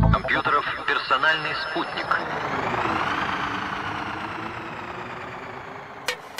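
Psytrance breakdown: the kick drum drops out, a processed voice sample plays for about two seconds, then a synthesizer sweep rises and a wide pad slowly fades away.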